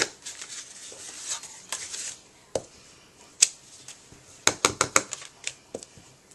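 Wooden-block rubber stamp being inked on an ink pad and pressed onto cardstock: scattered sharp taps with light paper rustling, and a quick run of several taps a little before the end.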